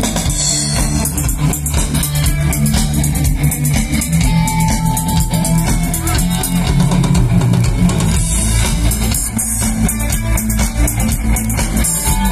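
Live rock band playing through a PA: electric guitars over bass guitar and a drum kit keeping a steady beat, with a held guitar note a few seconds in.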